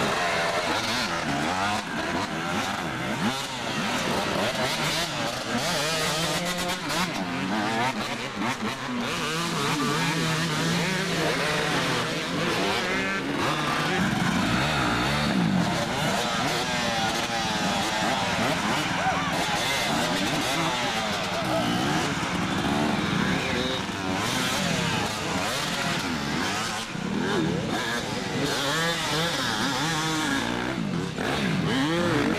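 Several off-road dirt-bike engines revving up and down at once, the pitch rising and falling over and over as riders work their bikes over a tyre obstacle, with voices mixed in.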